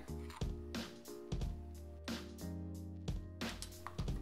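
Background music with soft held tones and a few light clicks.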